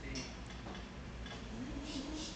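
Faint murmur of distant voices in a room, with a few light ticks.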